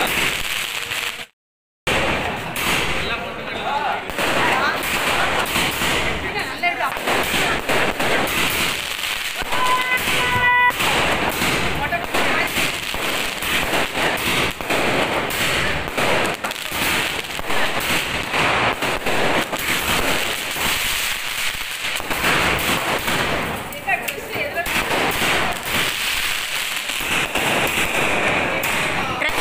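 Diwali firecrackers and aerial fireworks going off without pause, a dense run of crackles and bangs. The sound drops out briefly about a second and a half in, and a short steady tone sounds near the middle.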